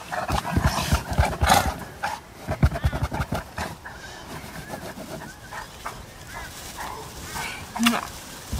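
A large pet dog making low vocal sounds and moving against the bedding as it is petted, in a run of pulses over the first few seconds, then quieter.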